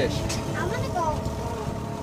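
Faint talking over a steady low rumble, with no distinct event standing out.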